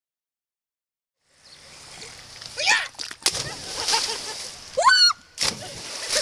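Silence, then about a second and a half in, water splashing as people jump off a rock ledge into a lake, with voices shouting and a rising whoop near the end.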